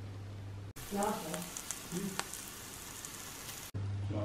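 Halloumi slices sizzling in oil in a frying pan, a steady hiss with fine crackles, starting suddenly about a second in and cutting off shortly before the end.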